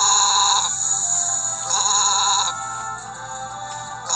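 Background music from a children's Bible app, with a short wavering, bleat-like sound effect played twice, about two seconds apart.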